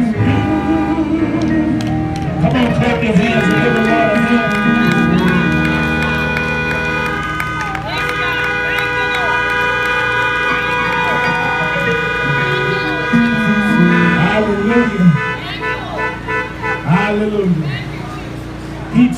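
Car horns sounding in long held blasts, several at once, for about ten seconds, mixed with voices and music; near the end the horns stop and raised voices carry on.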